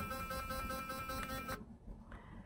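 BURST sonic electric toothbrush running in its massaging mode, a steady, pretty loud high-pitched buzz, then switched off abruptly about a second and a half in.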